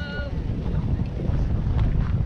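Wind buffeting the camera's microphone, a loud low rumble, with faint voices in the background.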